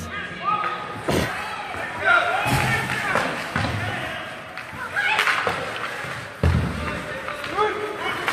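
Ice hockey play in an echoing arena: a few sharp knocks of sticks and puck against the ice and boards, about a second in, at about two and a half seconds and near the end, over spectators' voices carrying through the rink.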